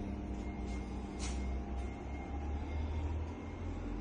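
Steady low mechanical hum with faint steady tones from a switched-on Lainox combi steam oven, under a low rumble, with one brief hiss about a second in.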